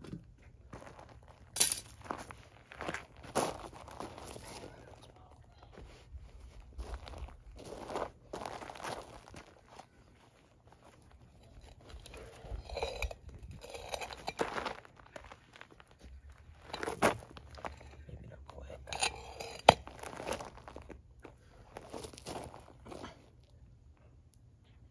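Footsteps crunching irregularly on loose gravel, with a few sharper knocks and clicks among them.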